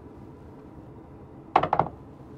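A heavy yacht cabin door being handled: a short cluster of knocks about one and a half seconds in, over quiet cabin room tone.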